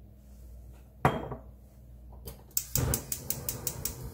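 A single knock about a second in, then a gas stove's igniter clicking rapidly, about six clicks a second, as a burner is lit under a stainless-steel pot.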